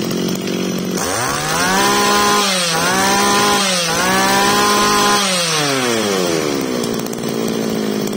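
Ryobi 26cc two-stroke brush cutter engine, idling and then revved hard on the throttle. The pitch rises sharply about a second in and holds high with two brief dips. From about five seconds it eases back down to idle.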